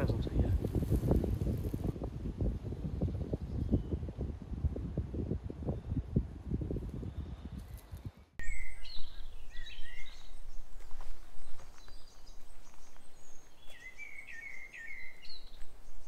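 Gusty wind buffeting the microphone, a dense low rumble, for the first half; then, after a sudden change, songbirds chirping in short sweeping phrases over quiet background.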